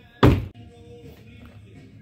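Chevrolet Camaro car door being shut with one solid thud a moment in.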